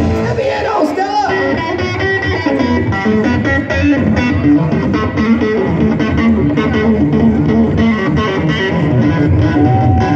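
Live blues-rock band playing an instrumental passage, led by electric guitar over drums and bass, heard from within the crowd.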